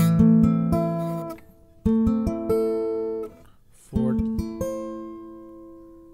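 Acoustic guitar sounding an A minor chord fretted high up the neck, played three times about two seconds apart, each chord left to ring and fade.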